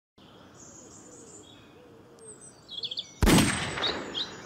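Woodland songbirds chirping, with a short descending trill about two and a half seconds in. Just after three seconds a sudden loud burst of noise cuts in and fades over the last second.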